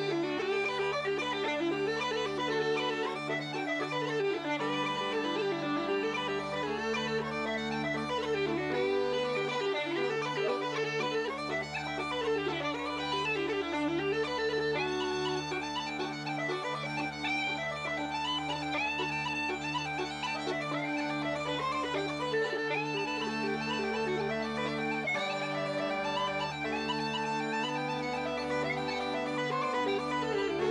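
Uilleann pipes played as a duet: an ornamented melody on the chanters over steady drones. Held regulator chords underneath change every few seconds.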